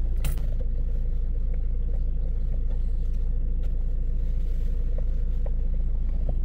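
Steady low rumble of a van engine idling, heard from inside the cab, with a few faint clicks over it.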